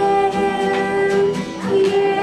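Acoustic guitar accompanying two girls singing long held notes.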